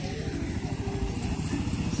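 Small motorcycle engine running at low revs, a steady low pulsing.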